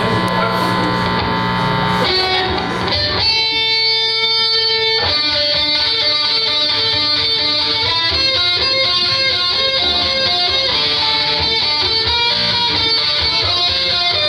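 Electric guitar played live through an amplifier: chords ring for the first couple of seconds, then a single note is held, and from about five seconds in a picked riff of short repeating notes begins.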